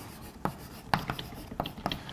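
Chalk writing on a chalkboard: a string of short, sharp taps and scratches as symbols are written.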